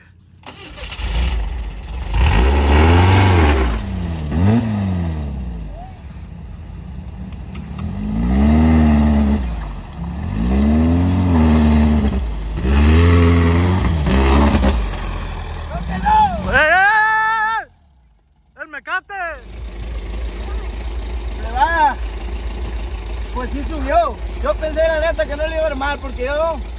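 Dune buggy's air-cooled Volkswagen Beetle (Vocho) flat-four engine revving hard in repeated surges as the buggy climbs a steep dirt slope, then running at a steady idle in the last several seconds.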